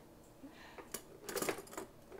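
Metal utensils clinking against each other in a crowded kitchen drawer, with a few light clicks about a second in and a short rattle in the second half.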